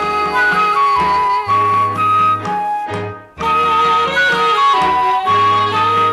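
Instrumental interlude in a Vietnamese vọng cổ song: a lead melody of held, stepping notes over a steady bass line. The phrase breaks off briefly about three seconds in, then starts again.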